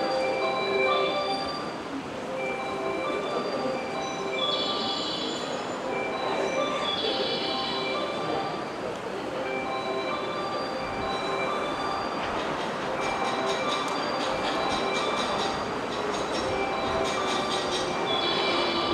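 A train running along a station platform with a steady rumble of wheels on rail. Short high-pitched wheel squeals come and go, the strongest about a quarter and two-fifths of the way in. Rapid clicking joins in during the second half.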